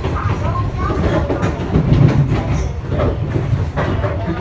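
Running noise of a Taiwan Railways Tze-Chiang express train heard from inside the carriage: a steady rumble with scattered clicks from the wheels on the rails.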